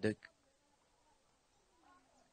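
A faint, wavering animal call in the background, once shortly after the start and again near the end.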